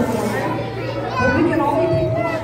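Speech over a microphone and PA in a large hall, mixed with children's voices from the audience, over a steady low hum.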